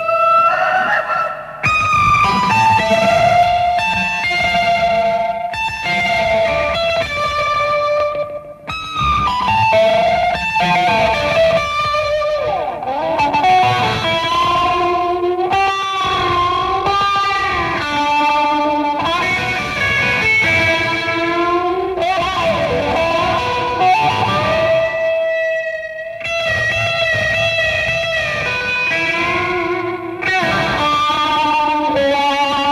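Instrumental passage of an early-1970s space-rock recording: a distorted, effects-laden lead electric guitar plays long held notes that bend and waver, over bass guitar and drums.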